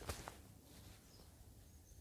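Near silence: faint outdoor background noise.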